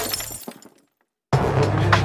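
Glass-shattering sound effect: a crash whose scattered tinkles die away within the first second. After a brief silence, music with a strong bass starts about a second and a half in.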